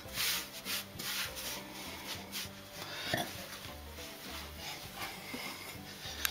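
Hands kneading a stiff flour-and-water dough on a floured tabletop: irregular dry rubbing and pressing strokes with soft knocks of the dough against the table.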